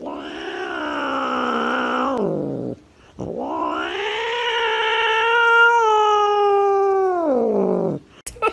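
Black-and-white cat yowling twice in long, drawn-out caterwauls. The first lasts under three seconds and drops in pitch as it ends. The second, after a short pause, lasts about five seconds, rising, holding steady, then sliding down at the end.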